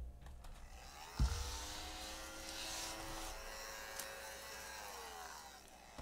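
A small electric motor hums steadily for about four seconds, starting after a thump about a second in, its pitch rising as it spins up and falling as it winds down near the end.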